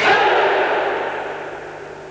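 A whole karate class executing one technique in unison in a large hall: a sudden loud burst of gi cloth snapping and feet landing on the floor, which echoes and fades over about a second and a half.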